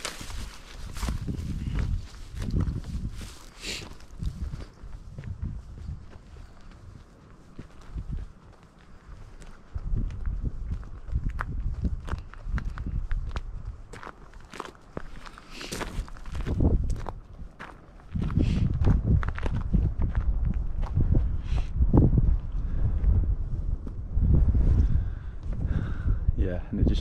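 Footsteps on a dirt and gravel mountain track, a run of short crunching steps with pauses. Gusts of wind rumble on the microphone, heaviest in the last third.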